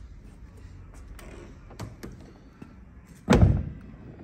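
2016 Range Rover Sport's soft-close car door shutting with one heavy thud about three seconds in, after a few faint clicks.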